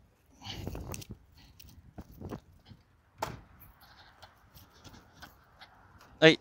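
Handling of a folding A-frame open-house sign being picked up and carried: a soft rustle near the start, then scattered clicks and knocks, the sharpest about three seconds in.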